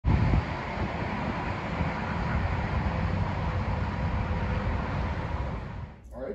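Wind buffeting an outdoor microphone over a steady rumble with a faint hum, loudest in a gust in the first half-second; it stops abruptly at the end.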